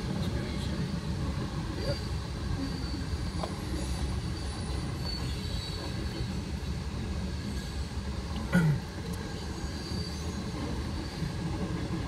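A freight train of tank cars rolling past at a grade crossing: a steady rumble of steel wheels on rail, with a faint high wheel squeal at times and one short, louder knock about eight and a half seconds in.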